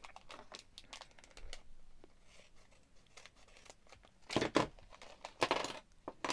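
Plastic foil blind bag crinkling as it is handled, then torn open with two louder rips near the end.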